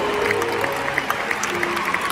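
Soft piano chords ringing out while a large audience applauds, with scattered individual claps.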